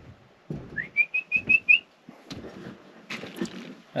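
A person whistling to call a dog: a short upward whistle followed by a quick run of five or six short, even notes, about a second in, with a few light knocks around it.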